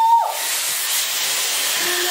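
Dyson Airwrap hair styler with a round brush attachment blowing air: a steady rush of air. A short rising "wouh" of a woman's voice overlaps it at the very start.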